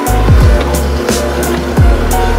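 Electronic background music with a steady beat: deep bass drum hits that drop in pitch and crisp hi-hats.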